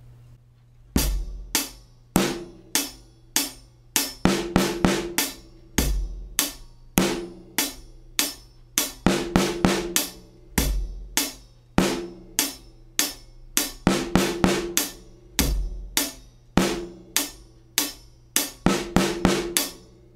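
A small drum kit plays a slow, steady rock groove: evenly spaced hi-hat strokes, a bass drum thump at the start of each bar, and a cloth-damped snare. The snare backbeats are syncopated, landing a sixteenth note either side of the backbeat, on the fourth sixteenth of beat three and the second sixteenth of beat four. The playing starts about a second in.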